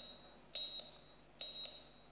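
Heart-monitor (ECG) beep sound effect: a single high beep repeating about once every 0.85 s, in time with a heartbeat.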